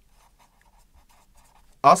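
Felt-tip marker writing a word on paper: faint, scattered scratching strokes. A man's voice starts speaking near the end.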